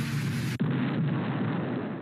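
Cartoon explosion sound effect from the watched film clip, the anti-aircraft hit on the flying reindeer sleigh: a sustained noisy blast that turns abruptly duller about half a second in and dies away near the end.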